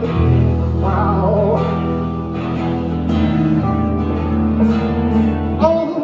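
A band playing live: strummed acoustic guitar over a held electric bass note and drums, with a man singing a phrase about a second in and again near the end.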